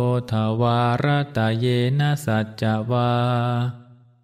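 A Buddhist monk chanting a line of Pali verse in a low, steady recitation tone, phrase by phrase on a few held pitches. The last syllable is drawn out, and the voice fades away just before the end.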